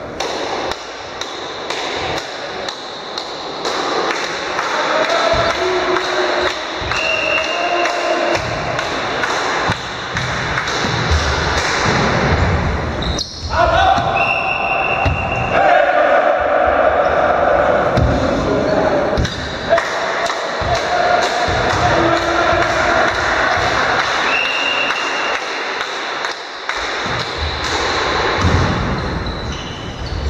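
Indoor volleyball in an echoing sports hall: repeated thuds of the ball being struck and hitting the floor, with players' voices calling out.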